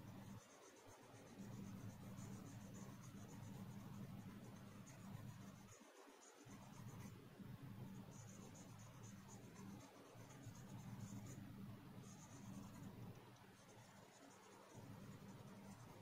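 Faint scratching of a pencil shading on paper, going in stretches of a few seconds with short pauses, over a low steady hum.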